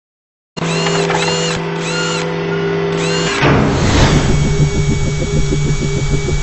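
Produced logo-intro sound effects with music. After half a second of silence, a steady hum carries four repeated chirping sweeps. A whoosh comes a little after three seconds, followed by a fast, drill-like whirring rhythm of about six pulses a second.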